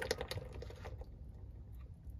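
Gear oil running out of an air-cooled VW Beetle's transmission drain hole and pattering into a drain pan: a crackle of small splashes that eases off after about a second into a fainter patter.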